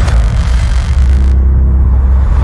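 Cinematic logo-reveal sound design: a deep, steady bass rumble under a loud whooshing hiss that cuts off suddenly about a second and a half in.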